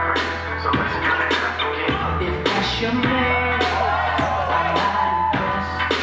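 DJ's dance-battle music played loud over the sound system, with a steady drum beat and heavy bass.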